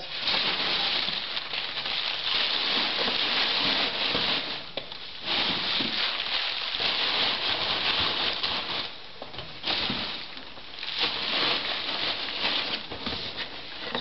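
Sheets of newsprint being crumpled up and stuffed into a cardboard box around packed dishes, a loud crinkling and rustling of paper. It comes in about four stretches with short pauses between them.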